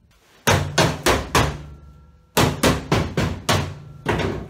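Hammer blows, in two runs: four quick strikes about half a second in, then five more after a pause, about three a second.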